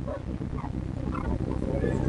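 A faint, muffled voice of an audience member asking a question away from the microphone, over a low rumble of room noise.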